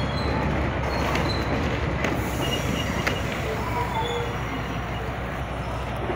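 Heritage train running along the track, heard from the moving train: a steady rumble of wheels on rails with a few sharp clicks and brief faint squeals.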